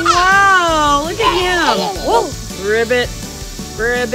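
High-pitched wordless voices cooing and squealing, their pitch gliding up and down in a wavering, sing-song way, with several short rising calls near the end.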